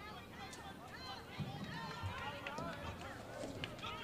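Indistinct voices calling out across an open field, many short overlapping shouts from players and the sideline with no clear words, over a low outdoor background.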